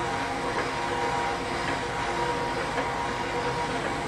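Steady mechanical running noise of gym exercise machines, with stair climbers in use.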